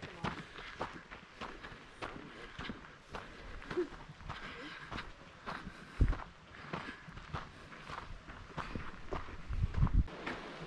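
Footsteps of a hiker walking on a packed dirt trail at a steady pace of about two steps a second.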